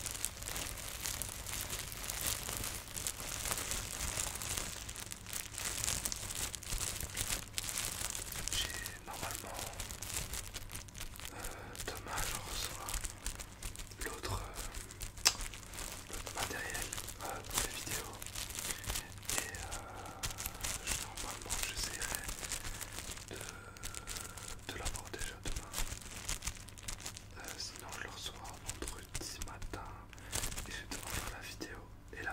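Clear plastic packaging crinkled and rustled close to the microphone, a continuous dense crackling.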